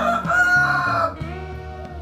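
A rooster crowing: one long call that ends about a second in, with steady background music beneath it.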